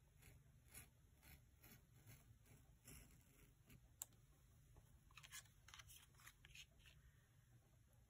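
Faint scratchy strokes of an X-Acto craft knife blade cutting a slit through a cardstock card on a cutting mat, with a sharp tick about halfway through.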